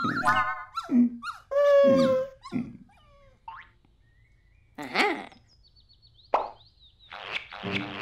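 Cartoon comedy sound effects: a wobbly rising whistle running into the start, then several short pitched plops and boing-like noises and a character's wordless vocal noises, with a sharp click a little after six seconds.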